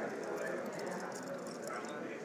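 Faint, ragged murmur of a church congregation reading scripture aloud, the voices scattered and not in unison.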